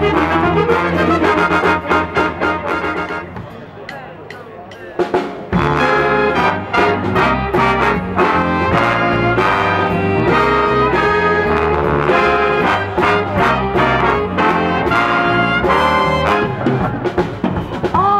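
Big band playing jazz, with trumpets, trombones and saxophones to the fore over rhythm section. About three seconds in the music drops away to a quiet passage, then the full band comes back in loudly about five seconds in.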